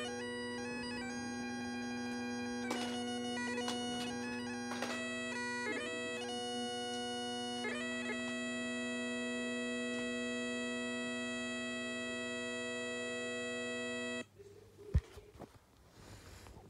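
Bagpipes playing: a steady drone under a chanter tune that steps between notes, then holds one long note. The pipes stop abruptly about two seconds before the end, followed by a sharp knock and some handling noise.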